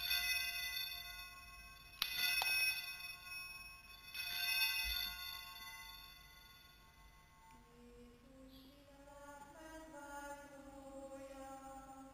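An altar bell is rung three times about two seconds apart, each strike ringing out and fading, marking the priest's communion at Mass. After the third ring dies away, a voice begins singing a hymn.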